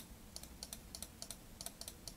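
Faint, quick light clicks of computer keyboard keys, about seven a second, as the strokes of an on-screen drawing are removed one by one.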